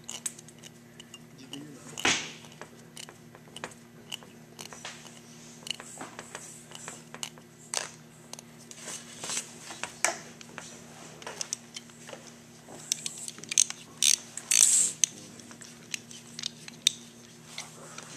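Irregular small metallic clicks, taps and scrapes as a screwdriver and the brass idle air adjusting needle with its spring are worked into the cast-iron carburetor body of an International 460 tractor, with louder clinks about two seconds in and again around fourteen to fifteen seconds. A steady low hum runs underneath.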